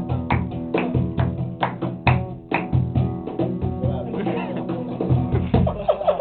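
Nylon-string acoustic guitar strummed in a steady rhythm, with no singing.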